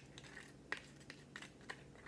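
Faint, scattered small crunches and clicks of a hard corn taco shell being bitten, the sharpest just under a second in.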